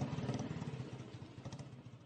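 Yamaha motorcycle engine running at low speed with an even pulse, fading away toward the end.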